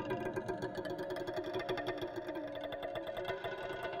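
Layered software-instrument music from a Logic Pro project: rapid repeated plucked harp-like notes over held synth and string tones.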